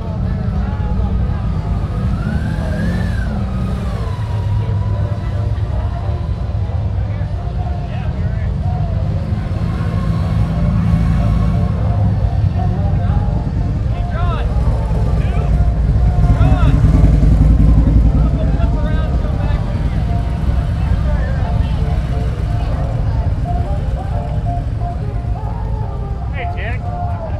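Several cruiser motorcycle engines rumbling on a crowded street, swelling louder for a couple of seconds about two-thirds of the way through. People talk underneath.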